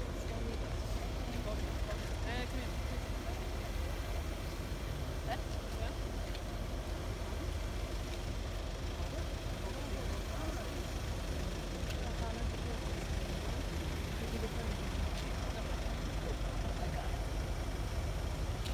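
Indistinct chatter of a small crowd of people, over a continuous low rumble.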